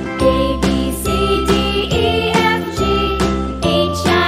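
Children's song music: a bright, tinkling melody over a steady beat.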